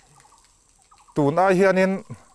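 A man's voice after a pause of about a second: he speaks a long, drawn-out vowel near the end.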